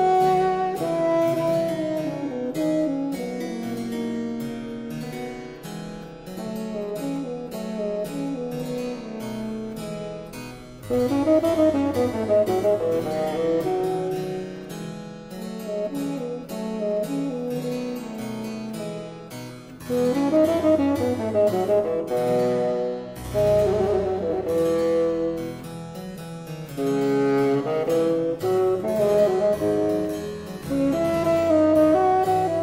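Baroque sonata for bassoon and continuo: the bassoon plays a melody with fast up-and-down runs over a harpsichord accompaniment.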